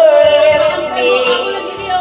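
A woman singing into a microphone over a backing track. She holds a long note with vibrato, then steps down to lower notes.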